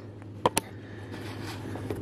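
Two short, sharp clicks about a tenth of a second apart, about half a second in, over a steady low hum of garage room tone.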